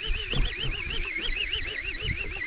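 A continuous warbling high tone that rises and falls evenly about six or seven times a second, like an electronic alarm.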